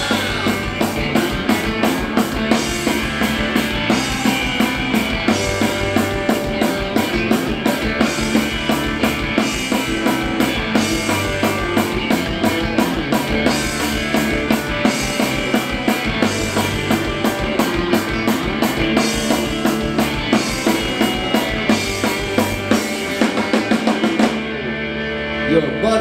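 Live blues-rock band playing an instrumental passage: a drum kit keeps a steady beat under electric guitars and bass guitar. The music stops abruptly at the very end.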